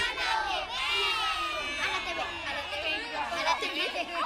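A group of children shouting and cheering together, many high voices overlapping at once.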